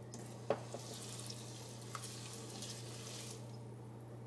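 Wooden spoon stirring Saskatoon berries in water in a stainless steel pot: a soft, watery swishing with a light knock of the spoon about half a second in.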